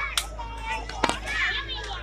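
High-pitched voices calling and shouting, like children at play, over a steady low hum, with two sharp knocks, one just after the start and one about a second in.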